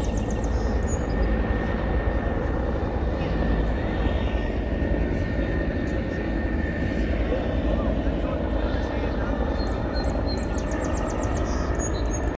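Helicopter flying overhead: a steady engine and rotor drone with a thin, steady high whine, over the chatter of people nearby.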